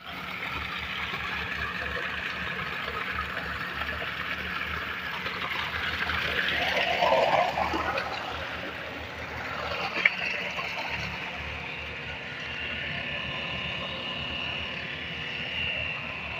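Water gushing steadily from a solar DC tube well's 3-inch delivery pipe into a concrete tank, at a pressure the owner calls fine, with a low steady hum beneath. A short click about ten seconds in.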